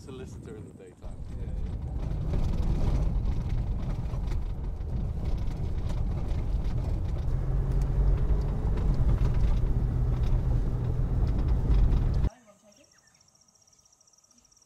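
Vehicle driving on an unsealed red dirt road, heard from inside the cabin: a steady low engine drone and road rumble. It starts about a second in and cuts off suddenly near the end.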